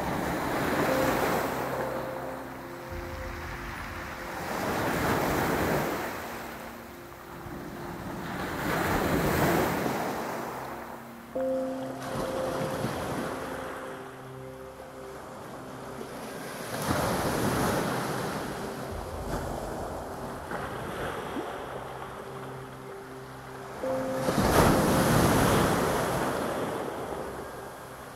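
Sea waves breaking and washing back over a pebble and boulder shore, rising and falling in slow surges every few seconds. The last surge is the loudest.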